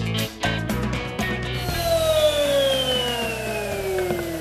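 Guitar-driven rock music with a steady beat for about the first second and a half, then a router's motor winding down after being switched off, its whine falling steadily in pitch.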